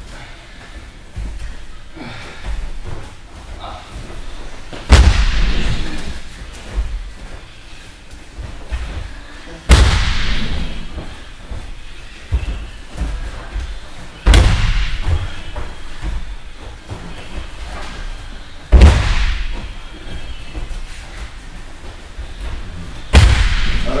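Five heavy thuds of a body being thrown onto a padded martial-arts mat, one every four to five seconds, each echoing briefly in the hall.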